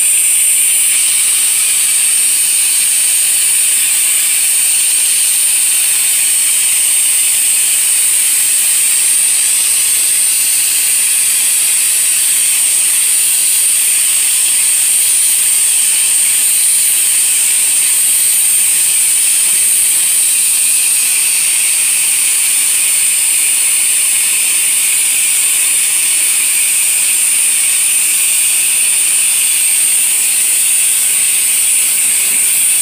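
Soft-wash spray wand spraying roof cleaning solution onto asphalt shingles at low pressure: a loud, steady, high-pitched hiss of the spray stream.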